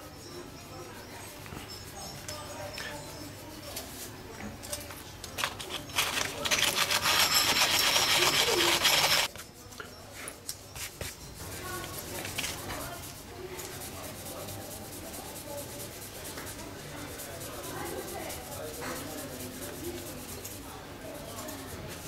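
Wood being rubbed and worked while thin patches are shaped and fitted for a violin top repair. Near the middle comes about three seconds of loud, raspy rubbing that stops abruptly; before and after it, quieter scraping and handling of the small wooden patches.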